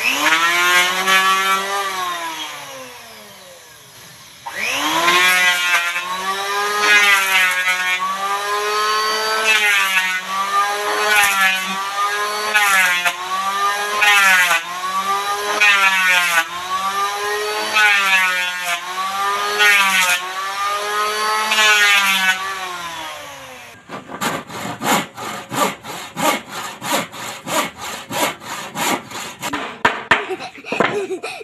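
Corded electric hand planer shaving the edge of a wooden board: the motor winds down about three seconds in, starts up again, then its pitch sags each time the blades bite the wood and recovers between strokes, a little more than once a second. In the last six seconds it gives way to a fast, even run of sharp strokes on wood, about four a second.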